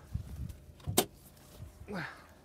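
A single sharp click about a second in, from handling the open driver's door of a 2017 Hyundai Sonata, with soft low knocks and handling noises before it.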